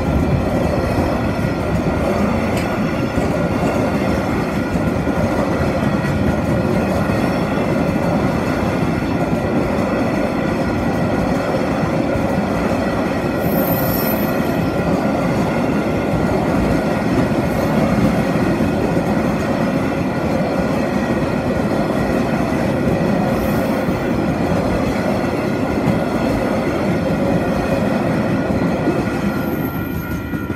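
A freight train's container wagons rolling past at close range: loud, continuous wheel and rail noise with steady ringing tones over it, starting to fade as the last wagon clears near the end.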